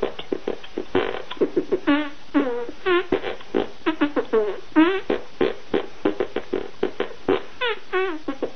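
Hand beatbox: rhythmic squelching, fart-like pops and squeaks made by squeezing air out of cupped, clasped hands, about four to five strokes a second, with short pitched wails that swoop up and down between them.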